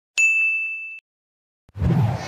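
An edited-in bell-like "ding" sound effect, struck once just after the start and ringing on one clear high tone for nearly a second before cutting off.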